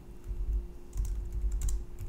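Computer keyboard being typed on: a run of several separate keystrokes as code is entered.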